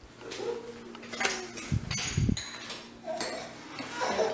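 Cups, glasses and spoons clinking and knocking against a table, a few sharp clicks with a cluster of dull thumps about halfway through.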